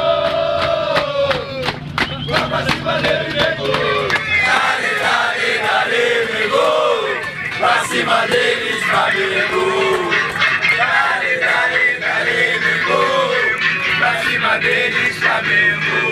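A group of men loudly singing and shouting a celebratory football chant together, with a run of sharp rhythmic hits in the first couple of seconds.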